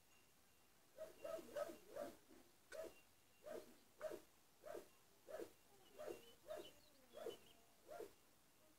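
An animal calling over and over, about a dozen short pitched calls at a fairly even pace, starting about a second in.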